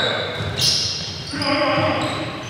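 Basketball game sounds echoing in a gymnasium: sneakers squeaking on the hardwood court and players' voices calling out, with a louder call in the second half.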